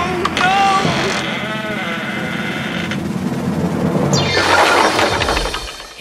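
Cartoon sound effects over a music backing: several bending, wavering cries in the first second and a half, then about four seconds in a loud, noisy crash that sweeps downward in pitch and fades as the wooden grandfather clock breaks apart under the elephant's weight.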